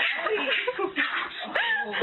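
Small dog yipping and whining, a quick run of short high-pitched calls that rise and fall in pitch.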